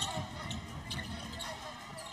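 A basketball being dribbled on a hardwood court, repeated bounces over the arena's background sound.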